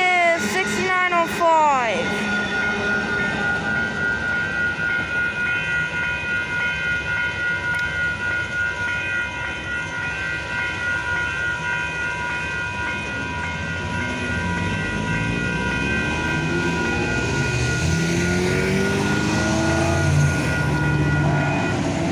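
Grade-crossing warning bells ringing in a steady pulse while the tail end of an Amtrak passenger train clears the crossing, with brief wavering squeals from the passing cars in the first couple of seconds. In the second half, cars' engines rise in pitch as traffic pulls away across the tracks.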